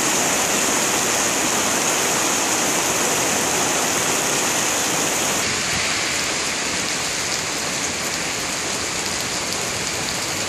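Steady rain falling on wet stone paving, a constant hiss; about halfway through it becomes slightly quieter and thinner.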